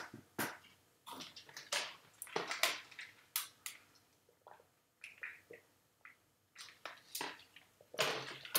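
Faint, scattered short clicks and taps with quiet gaps between them.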